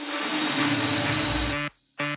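TV channel logo ident sound effect: a rushing, hissing noise sweep over a steady low tone, with a deep low swell building before it cuts off abruptly near the end.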